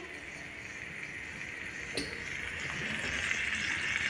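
Food sizzling in hot oil in a miniature clay cooking pot, a steady hiss that grows slowly louder, with a single sharp click about halfway through.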